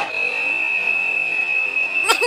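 A steady high-pitched tone held on one note, over faint background noise in the hall.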